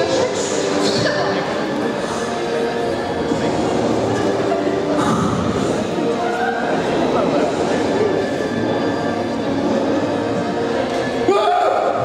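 Indistinct, overlapping voices with faint music, echoing in a large hall.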